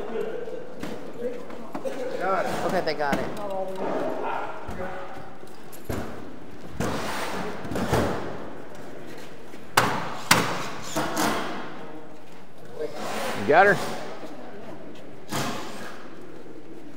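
Men's voices calling out while a large wall panel is shoved upright on a trailer by hand, with several sharp thuds and knocks as the panel shifts and is set in place.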